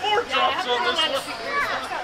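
People talking and chattering in overlapping voices, some of them high-pitched, with no clear words.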